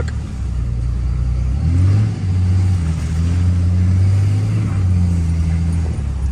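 Dodge Ram pickup's engine and road noise heard from inside the cab while driving. The engine note steps up a little about a second and a half in, then holds steady.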